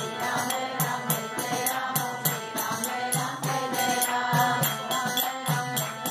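Devotional chanting by a group of voices, accompanied by a harmonium, with light percussion keeping a steady beat of about three strokes a second.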